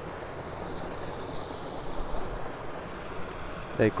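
Stream water running steadily.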